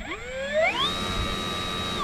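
Electric motor of a BlitzRC 1100 mm Supermarine Spitfire Mk24 model, running on a 3S pack, spinning up its propeller for a ground run-up. Its whine rises in pitch over about the first second, then holds steady.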